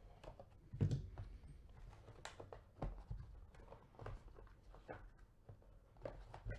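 Plastic shrink-wrap and a cardboard trading-card box handled by gloved hands: irregular crinkles, crackles and rustles, with a thump about a second in.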